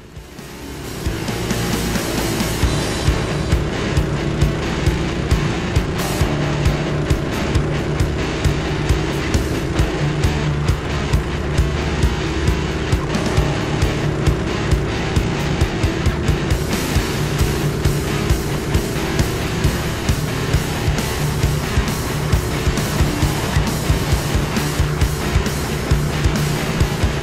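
Toro Power Clear 721 E single-stage snowblower's four-stroke engine running steadily under load as its auger throws snow, coming in about a second in. Background music with a steady beat plays over it.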